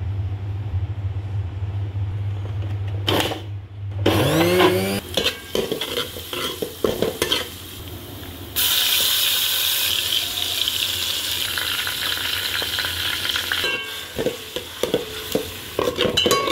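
Chopped garlic sizzling in hot oil in a steel pan: the sizzle starts suddenly about halfway through and stops a few seconds later. Before and after it, a steel ladle scrapes and clicks against the pan. The first few seconds hold a steady low hum and a brief rising whine.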